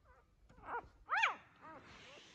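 Three-day-old Aussiedoodle puppy crying: three short, high squeals, each rising and then falling in pitch, the middle one loudest.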